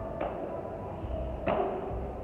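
Two sharp smacks of sparring strikes landing, a little over a second apart, the second louder, over a low steady hum.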